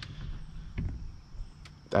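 A pause in speech filled by outdoor background: a low steady rumble and a faint, steady high-pitched insect drone.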